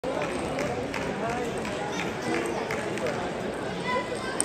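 Indoor table tennis hall with many matches under way: a steady babble of many voices, cut through by frequent sharp clicks of celluloid balls striking bats and tables, irregular and about two to three a second.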